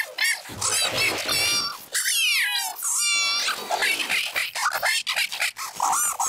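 A cartoon character's voice line run through stacked editing effects: pitch-shifted and chopped so the words are unintelligible, high-pitched, with falling glides about two seconds in.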